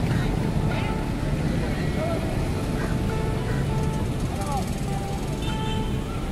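Busy street ambience at a town square: a steady low rumble of passing traffic, with voices of people nearby and music in the background.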